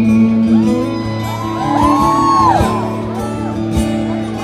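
Live acoustic guitar and band holding sustained chords in a large hall, with fans in the crowd whooping and shouting over the music, most around the middle.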